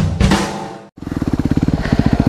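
Intro music with a drum beat cuts off just before a second in. A Yamaha WR250R's single-cylinder four-stroke engine then runs with a steady, even pulse.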